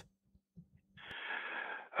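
A man's audible in-breath, about a second long, over a telephone-quality line just before he begins to answer. It follows about a second of near silence.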